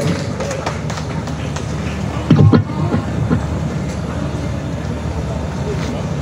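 Live concert ambience between songs: a steady low hum from the stage sound system with faint crowd noise, and one short shout about two and a half seconds in.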